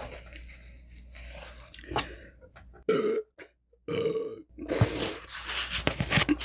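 A woman burps twice in short bursts, about three and four seconds in. Quieter wet mouth and chewing sounds from eating pizza come before and after.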